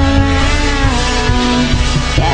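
Rock music from a band: distorted electric guitars over bass and drums, with one long held note through most of it.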